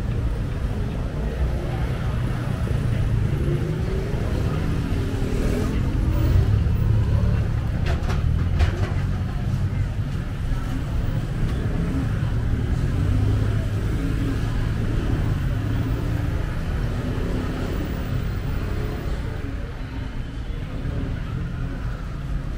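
Road traffic passing close by: cars and motor scooters driving along the street, a steady low engine rumble that swells and shifts in pitch as vehicles go past, with a couple of sharp clicks about eight seconds in.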